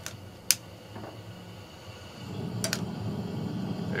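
Propane camp burner being lit: two sharp igniter clicks, about half a second and two and a half seconds in, then the burner catching with a steady rush of gas and flame that grows louder.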